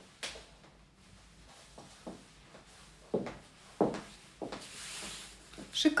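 Footsteps of high-heeled boots on a hard floor, a few separate knocks that fall about half a second apart in the second half, followed near the end by a soft rustle.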